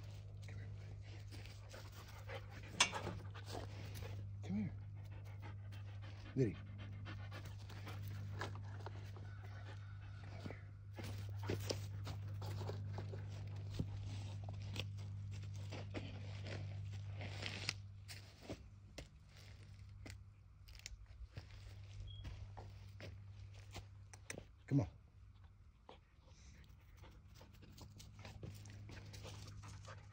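A dog panting, with scattered clicks, over a steady low hum that eases about two-thirds of the way through.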